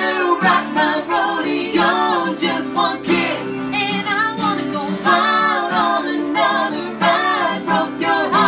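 A woman singing a lead vocal line, accompanied by two strummed acoustic guitars, in a live unplugged performance.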